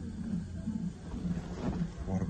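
A low, steady hum of hospital room equipment with a soft rhythmic pulsing, about three beats a second.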